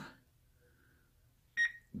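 Near silence, then one short electronic beep about a second and a half in.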